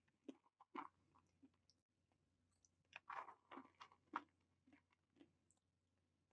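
Near silence broken by faint, short crunching mouth sounds close to a microphone: a person chewing, with a cluster of them about three to four seconds in.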